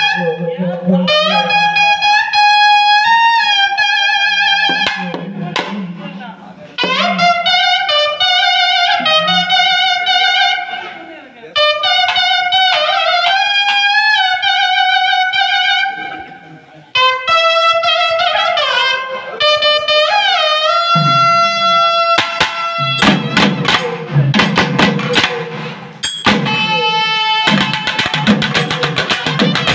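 Trumpet playing an ornamented Tamil naiyandi melam folk melody in phrases with sliding, bending notes and short pauses between them, over a steady low drone. About 22 seconds in, thavil drums come in with fast, dense strokes under a long held note.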